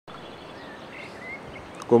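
Faint steady outdoor background hiss with a few faint, short high chirps of songbirds; a man starts speaking right at the end.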